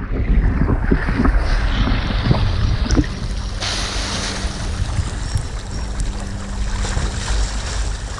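Water sloshing and splashing around a camera held at the surface, over a steady low engine drone. About three and a half seconds in, the hiss of a jet of spraying water joins in.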